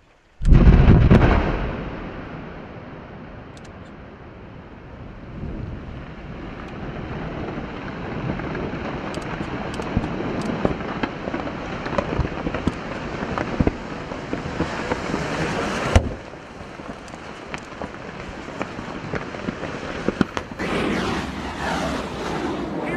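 Explosive volcanic eruption: a sudden loud boom about half a second in, dying away over a second or two into a continuous rumble, with scattered sharp cracks and crackling all through it and one strong crack near the end.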